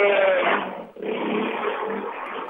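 A woman's voice coming through a telephone line, narrow-sounding and garbled, so that the words are indistinct.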